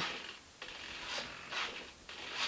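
Faint whirring of the small servos that drive the thrust-vectoring nozzles of a Freewing Su-35 RC jet, moving as the elevator stick is worked, in a few short runs.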